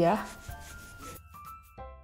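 Fingertips rubbing a liquid serum into the skin of the face, a faint soft rubbing. Background music with short, evenly repeating pitched notes comes in during the second half.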